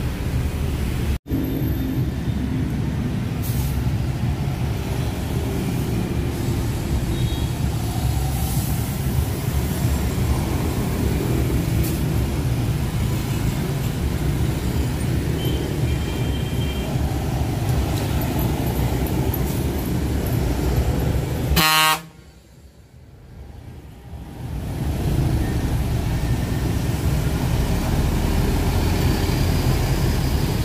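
Diesel engines of large sleeper coach buses rumbling as they pull past at close range through motorbike traffic. A short horn toot sounds about two-thirds of the way through, after which the sound drops away for a couple of seconds.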